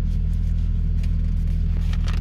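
Steady low hum of a car's running engine heard inside the cabin, with a brochure page rustling as it is turned near the end.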